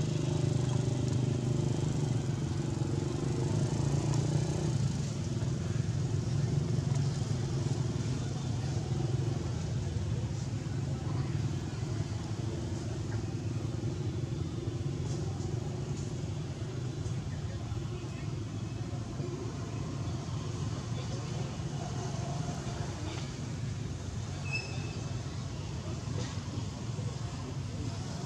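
A motor running steadily in a low, even drone, with a short high chirp near the end.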